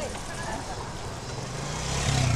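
A motorcycle engine running as it rides past close by, its low pulsing drone growing louder toward the end, with voices from the crowd alongside.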